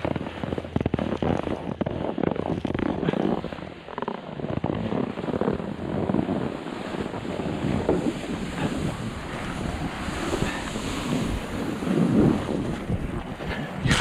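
Wind rushing over the camera microphone as a snowboard slides down a snowy slope, with the board scraping over the snow. The rushing noise rises and falls throughout.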